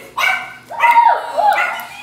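A dog barking, a few short high-pitched barks in quick succession.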